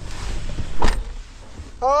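Pickup truck's driver door swung shut, a single thump a little under a second in, with rustling of someone settling into the seat before it.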